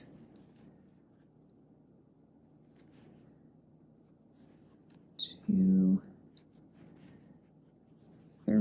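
Faint scratchy rubbing of a metal crochet hook drawing cotton yarn through stitches, with scattered small high ticks. A short spoken sound breaks in about five and a half seconds in.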